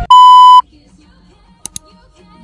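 A loud, steady electronic beep lasting about half a second, a sound effect edited in over a TV-static transition. Two brief faint clicks follow near the end.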